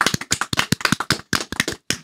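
A small group of people clapping their hands: a quick, irregular run of sharp claps.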